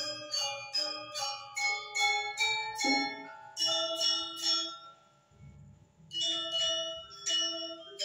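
Background music of Balinese gamelan: bright metallophone notes struck in a quick, steady run. The run breaks off for about a second a little after the midpoint, then starts again.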